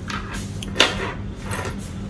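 Small metal brake-line fittings and short steel brake lines being set down and shifted on a tabletop: one sharp clack a little under a second in and a few lighter clicks, over a steady low hum.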